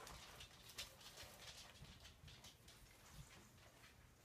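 Near silence, with faint scattered rustles and light ticks from a cloth Santa tree topper being worked down onto the top branches of a small pine Christmas tree.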